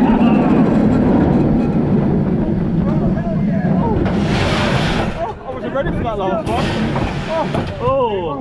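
Montu inverted roller coaster train running along the track with a steady loud rumble and wind. About five seconds in the rumble drops as the train slows, with two short bursts of hiss, and the riders' voices and laughter come through.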